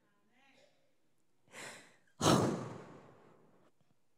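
A woman breathing close into a handheld microphone: a short inhale about one and a half seconds in, then a longer audible sigh that fades away.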